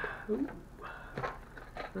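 Packaging being handled: crinkle-paper box filler and a clear plastic lure package rustling, with a few short clicks and scrapes. A brief voice sound comes about a third of a second in.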